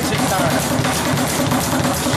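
A speed bag being punched in a fast, steady rhythm, the leather bag knocking rapidly against its rebound board.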